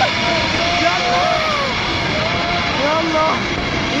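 Steady roar of a flooding river, with several people crying out in long, drawn-out calls over it.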